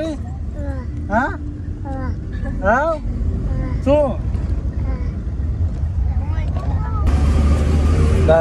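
Steady low rumble of a car's engine and road noise heard inside the cabin, with a few drawn-out vocal calls over it that rise and then fall in pitch. About seven seconds in, a brighter hiss comes in over the rumble.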